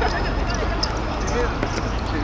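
Distant players' voices calling on a football pitch, with a few short sharp thuds of the ball being kicked and bouncing on the hard playing surface, over a steady low rumble.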